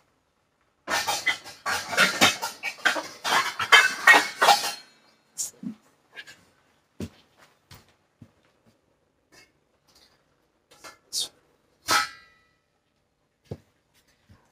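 Metal pots, pans and lids clattering together for about four seconds as a lid is dug out, followed by scattered clinks and knocks of a stainless steel lid being handled and set on a saucepan, one clink near the end ringing briefly.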